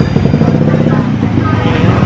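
Steady low rumble, with faint voices in the background.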